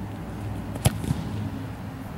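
An American football kicked off a tee: one sharp smack of the foot striking the ball a little under a second in, followed by a fainter knock about a quarter second later.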